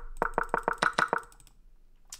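A rapid run of identical chess-move click sounds from an online chess board, about eight a second, as the game's moves are stepped back through one after another; the clicks stop about a second and a half in.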